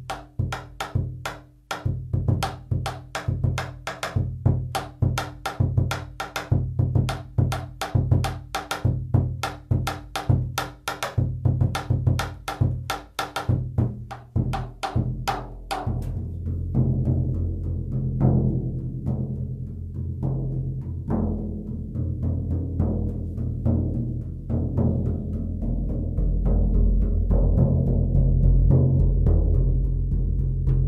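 Large oval shamanic frame drum with a plastic membrane, struck with beaters: for about the first half a quick, even beat of sharp strokes over a deep booming resonance, then a fast roll that merges into a continuous low rumble, growing louder toward the end.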